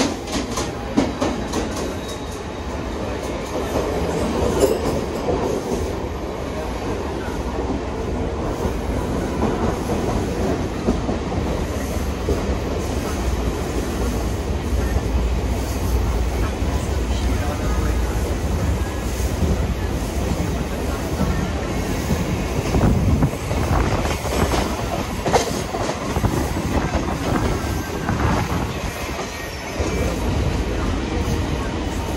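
Mumbai suburban local electric train running at speed, heard from its open doorway: a steady rumble of wheels on rails with rushing air, and a few sharp clacks over rail joints in the last third.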